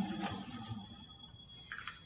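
A faint, steady high-pitched electric whine over a low hum that fades away, cut off abruptly near the end.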